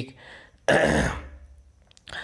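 A man clears his throat once: one short, sudden, rough burst that fades within about half a second.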